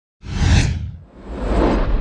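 Two whoosh transition sound effects over a low rumble, laid under an animated broadcast logo: a short one about a quarter second in, then a longer one swelling from about a second in.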